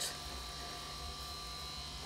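Steady low electrical hum with a faint high-pitched whine over it.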